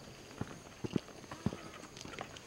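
Footsteps on a dirt footpath: a few faint, uneven steps about half a second apart.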